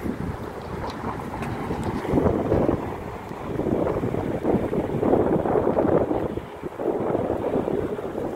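Air New Zealand Boeing 787-9 passing low overhead on landing approach: steady jet engine noise that swells and eases, mixed with wind buffeting the microphone.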